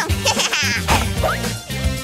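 A girl giggling and laughing over background music.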